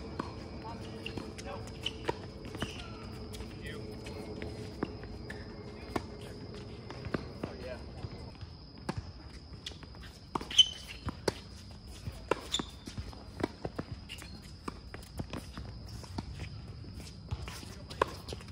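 Tennis balls struck by racquets and bouncing on a hard court during a doubles rally, heard as sharp irregular knocks, with the loudest hit about ten and a half seconds in, and players' footsteps on the court.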